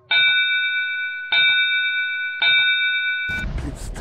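A bell struck three times, about a second apart, each strike ringing on in a bright chord of tones. The ringing cuts off abruptly about three and a half seconds in as a loud burst of noise begins.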